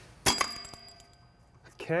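Drum brake shoe return spring snapping into place as locking pliers let it go: one sharp metallic clink about a quarter second in, ringing on for over a second.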